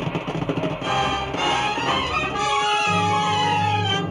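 Orchestral music bridge: strings sweep upward and settle into a held chord over a strong bass about three seconds in, after a rush of rapid beats in the first second.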